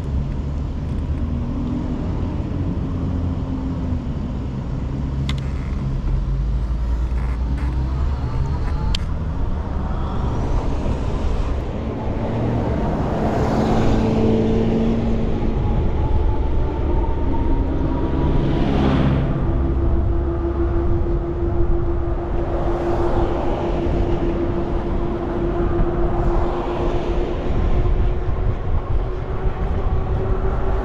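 Road traffic heard from a moving bicycle: a steady low rumble of riding noise, with several vehicles passing one after another in the second half.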